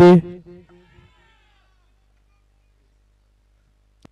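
A male commentator's voice drawing out the last word of a sentence, fading out about a second in, followed by near silence.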